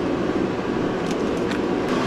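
Portable forced-air shop heater running with a steady roar, with a few light clicks over it.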